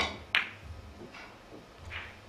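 Three-cushion carom billiards shot: a sharp click of the cue tip on the cue ball, then a second sharp click of ball striking ball about a third of a second later, followed by two fainter knocks as the ball runs into the cushions.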